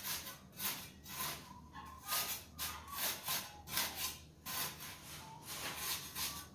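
Steel mason's trowel scraping and cutting through fresh sand-cement screed in repeated short strokes, about two a second, to cut the edge of the freshly laid subfloor.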